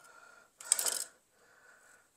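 A short clatter with a sharp click, about half a second in, as hard objects are handled during the fireplace work, with faint rustling before and after it.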